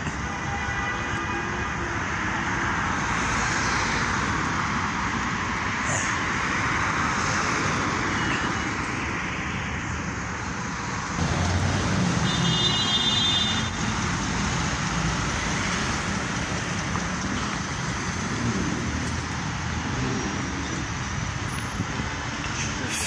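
City street traffic: a steady wash of cars running and passing on a busy road. About halfway through the low rumble grows, and a brief high-pitched tone sounds for about a second.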